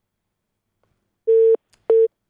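Telephone line tone on a failed call: after a silent pause, two short beeps of a single steady tone, the sign that the phone link has not connected or has dropped.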